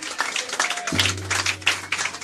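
Live jazz band playing, with a low held bass note starting about halfway through over sharp percussive strokes.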